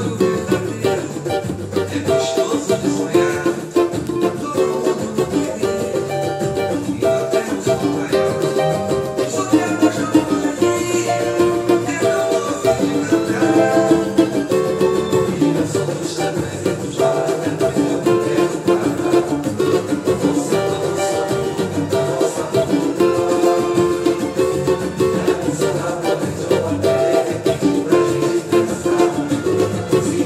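Cavaquinho played in a quick, steady pagode strumming rhythm, running through the chords F, D7, Gm and C7 in the key of F.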